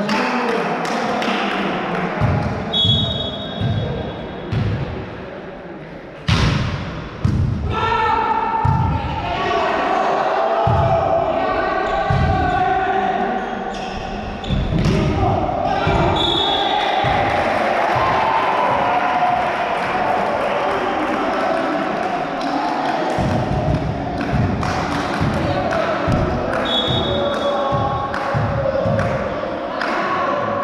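Indoor volleyball play in a reverberant gym hall: repeated thuds of the ball being struck and bouncing and of players' feet, with overlapping shouts from players and spectators.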